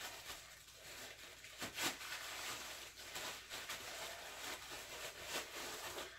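Faint rustling and crinkling of plastic packing wrap, with a few short scrapes, as a wrapped statue base is worked loose and lifted out of a styrofoam packing box.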